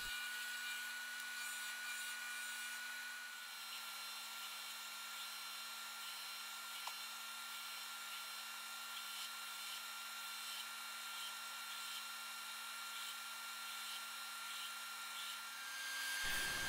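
Ryobi belt and disc sander running with a steady motor whine while a maple lure blank is sanded against the disc and then the belt, heard quietly.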